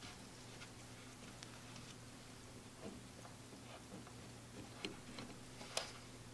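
Faint, scattered clicks and ticks of a small steel bolt being fitted by hand into the trim motor's awkward rear mounting holes, over a low steady hum.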